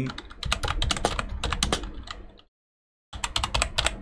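Fast typing on a computer keyboard: a dense run of key clicks that stops dead for about half a second past the middle, then starts again.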